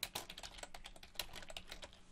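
Computer keyboard typing: a quick, faint run of keystrokes as a line of code is typed.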